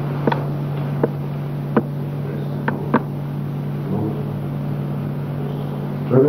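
Steady low hum and hiss of an old film soundtrack, with a few short clicks in the first three seconds.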